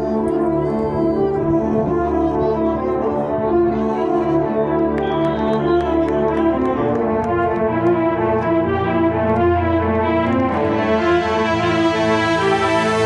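Background music led by brass instruments, playing steadily at a full, even level.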